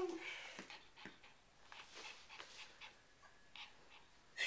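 Faint, scattered light taps and scuffs as a Yorkshire terrier in dog boots is set down and moves about on the floor. A loud held high note fades out right at the start.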